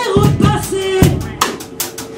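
Live rock band playing: drum kit strikes, snare and bass drum, over held guitar notes.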